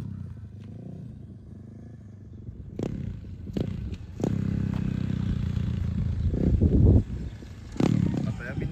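Motorcycle engine running as the bike rides on a gravel road: a Honda XRM 125 underbone with a freshly built four-valve head on its break-in ride. It is quieter at first, with a few sharp clicks, then grows louder about four seconds in, rises briefly and drops off suddenly near the end.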